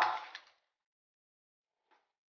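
The last words of a man's speech, ending about half a second in, then silence with one faint, brief tick just before the end.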